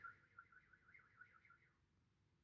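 A woman's faint, high wavering light-language vocal sound, its pitch warbling up and down about four times a second before fading out near the end.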